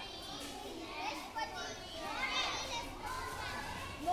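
A large group of schoolchildren chattering at once, many high voices overlapping.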